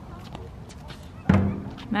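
A basketball hitting the outdoor court with a loud thud about a second in, followed by a short ringing note.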